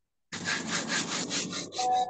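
Handling noise: fingers rubbing and scratching over a phone's microphone in quick regular strokes, about seven a second. Near the end a steady tone with several pitches sets in.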